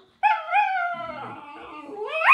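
Small terrier-type dog "talking": a high, wavering whine-howl that starts just after the beginning and slides down into a lower, fading grumble. It is the dog's demanding vocalising when it wants something from its owner.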